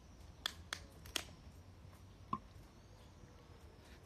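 A man drinking from a can: a few faint sharp clicks of gulping and handling, three in the first second or so and one more a little past halfway.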